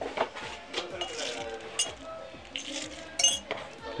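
A ceramic sugar bowl being handled: its metal spoon and ceramic lid clink against the bowl a few times, with short high ringing.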